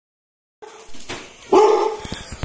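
Small dog barking and yelping in excitement as its owner arrives, ending in one loud, drawn-out high yelp about a second and a half in.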